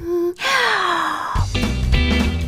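A woman's breathy, falling gasp of 'aah', then about a second and a half in the band's music comes in with guitar and bass.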